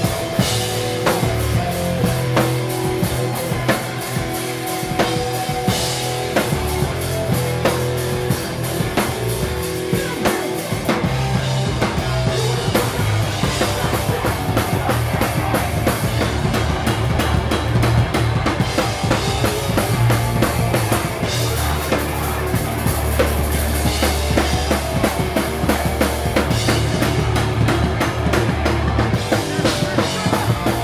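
Hardcore punk band playing live through a club PA: loud, busy drum kit with distorted electric guitars and bass guitar.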